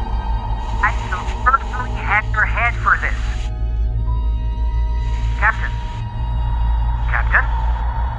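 A man's voice speaking German through a radio-like filter, with hiss that switches on with each phrase and cuts off after it, over a dark, low droning film score.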